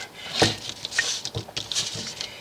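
A few short scuffs and knocks of an electric 12-string guitar being handled on a workbench, the loudest about half a second in.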